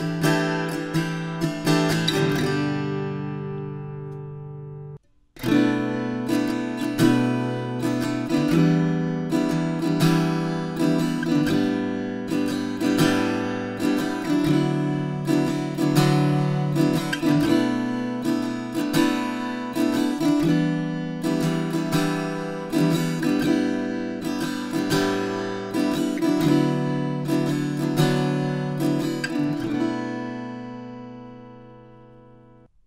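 Klos carbon fiber travel acoustic guitar played unplugged, plucked notes ringing in a steady rhythm. The playing dies away and cuts out about five seconds in, then a new passage starts abruptly.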